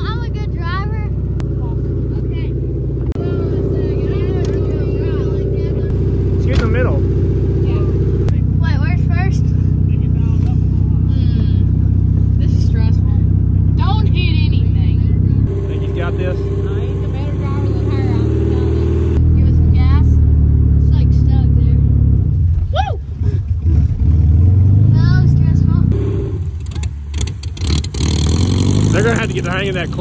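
1971 Volkswagen Beetle's air-cooled flat-four engine running as the car is driven, its pitch stepping up and down with the throttle. About two-thirds of the way through it rises in a rev.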